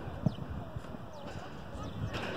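Distant voices of young footballers calling out across an open pitch, faint and scattered, over a low, uneven rumble.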